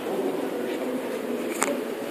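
Steady, dense background noise of a large, echoing atrium, sitting low to mid in pitch, with a single sharp click about three-quarters of the way through.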